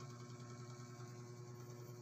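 Faint, steady electrical hum with no music over it.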